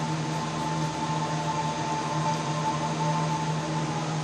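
Steady room hum and noise, as from a fan or air conditioner, with a faint held tone above it.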